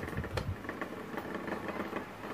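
Electric fan running with a steady motor hum while its head swings side to side, its swing (oscillation) motor newly replaced. A couple of short clicks and a low knock come in the first half-second.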